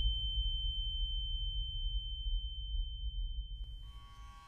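A steady high-pitched ringing tone, a horror-soundtrack effect, held over a low rumble that slowly fades. A short click comes near the end.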